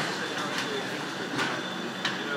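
Steady running noise of food-production machinery, with a couple of sharp metallic clacks.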